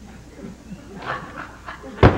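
A few short, high yelp-like cries from a person, coming about a second in after some low murmured sounds.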